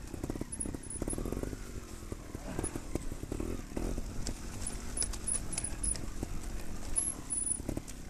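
Off-road motorcycle engine running at low revs, the pitch rising and falling with small throttle changes as the bike picks its way along a slippery, muddy rut. Short knocks and rattles from the bike come through over the rough ground.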